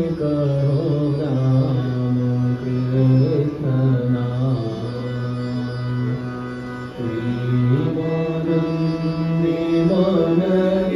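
Devotional bhajan: a man's voice sings long held notes over a harmonium's steady reed drone and melody, with a short break past the middle before the next phrase.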